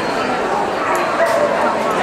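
A dog barking amid the chatter of many people in a large indoor hall.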